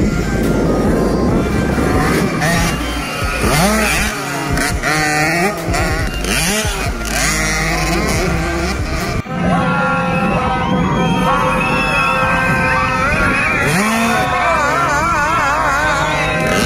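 Motocross dirt bike engines revving up and down as the bikes race, mixed with music.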